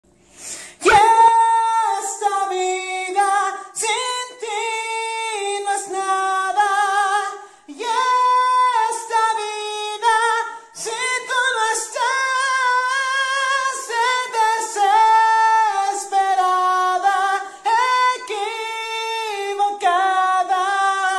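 A single high voice singing unaccompanied, starting about a second in, in long held notes with vibrato and short breaks between phrases.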